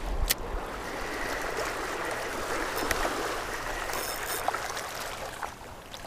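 Small waves breaking and washing over a stony shoreline: a steady wash of surf over pebbles.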